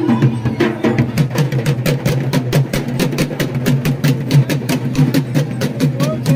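Drums beaten in a fast, even rhythm of sharp strikes, several a second, over the noise of a large crowd.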